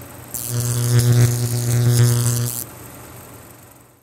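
Edited-in transition sound effect: a deep, steady electric buzz with a hiss of static over it. It starts about half a second in, lasts about two seconds, and cuts off sharply.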